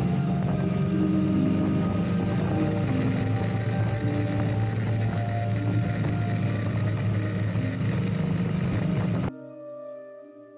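Motorcycle engine and wind noise at steady cruising speed, with faint music underneath. Near the end the ride noise cuts off suddenly, leaving only soft piano music.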